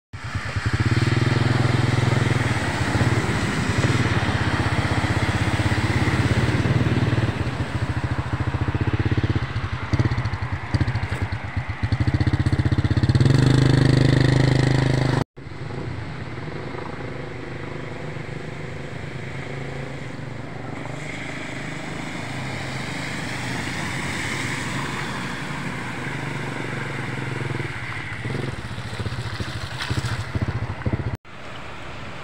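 Road traffic on a flooded road: vehicle engines running close by with a loud, low rumble. After a sudden cut about halfway through, there is a quieter, steady wash of noise, like tyres or water running on the wet road.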